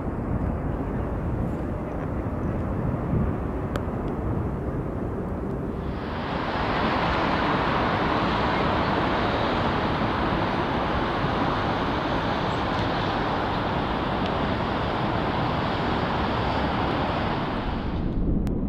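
Steady outdoor background noise, a rushing sound with no distinct events, that jumps louder and brighter about six seconds in and cuts off suddenly at the end.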